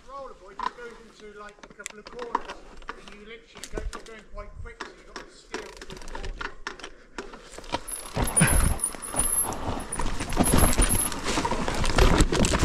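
Mountain bike riding down a dirt trail: tyres on loose dirt and roots, with the frame and chain knocking and rattling over bumps. It gets louder and rougher about two-thirds of the way through as the ride goes over rougher ground.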